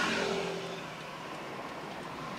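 Road and tyre noise heard from inside a moving car. A louder rush at the start fades within about a second, then the noise settles to a steady level.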